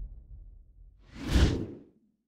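Sound-design whoosh effect in a logo sting: a deep low rumble dies away, then about a second in a single whoosh swells up and fades out.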